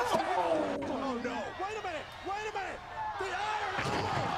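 Excited wrestling TV commentary over crowd noise, with a sharp crash near the end as a wrestler slams onto the ringside announce table.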